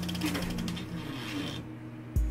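Old film projector sound effect: a rapid, even mechanical clatter over a low hum, with the clatter dying away near the end.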